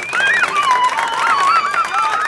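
Wedding guests clapping, with several high wavering cheering voices over the applause.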